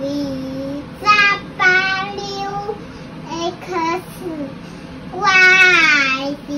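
A young child's voice singing in short phrases while pointing along alphabet letters, the last phrase, about five seconds in, the loudest.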